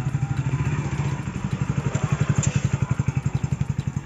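Motorcycle engine running at low revs as the bike moves off slowly, with an even beat of about ten pulses a second.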